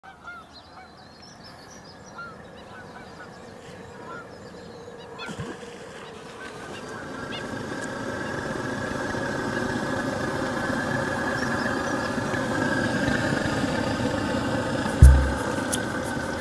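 Flock of geese honking, faint at first and growing steadily louder, with a short low thump about a second before the end.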